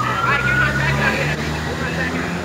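Police siren wailing: a high tone that has just risen holds steady and fades a little over a second in. Underneath are a low steady hum and faint voices.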